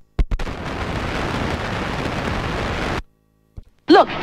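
A steady rush of noise, like a white-noise sound effect between tracks of an electronic dance mix. It starts just after the music cuts out, lasts about two and a half seconds, and cuts off suddenly.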